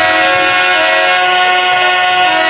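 Harmonium holding one long, steady chord of several notes, with no drumming under it.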